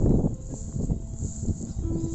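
Irregular low rustling and buffeting of wind and long dry grass against a moving handheld microphone, loudest at the very start, under a faint held note of background music.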